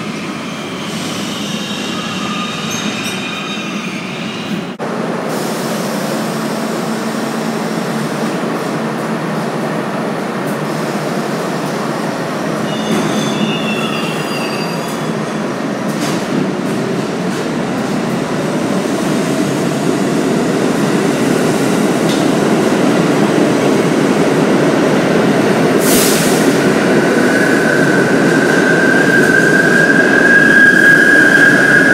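Subway train running on the tracks: a steady rumble with short wheel squeals, growing louder through the second half as the train moves along the platform. A brief hiss comes near the end, then a steady high-pitched squeal.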